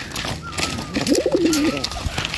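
Domestic pigeon cooing: one wavering low coo a little past the middle.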